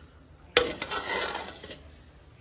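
A metal serving spoon knocks sharply once against an aluminium cooking pot about half a second in, then scrapes and scoops through a pot of pulao rice for about a second.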